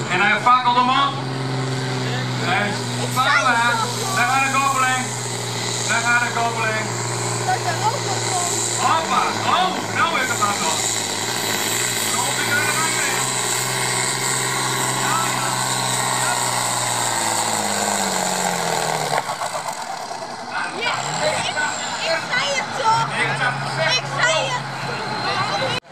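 Red International farm tractor's diesel engine running flat out under full load as it drags a weight sled, the engine note holding steady at first, then sinking slowly as the engine lugs down, and dropping away about three-quarters of the way through.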